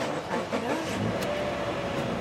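2015 Subaru Forester's 2.5-litre four-cylinder engine starting, heard from inside the cabin: a brief glide in pitch as it catches, then a steady idle from about a second in.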